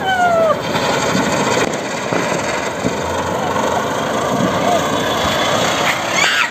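A ground spinner (chakri) firecracker spinning on the floor with a steady hiss of sparks. A short falling tone sounds in the first half second.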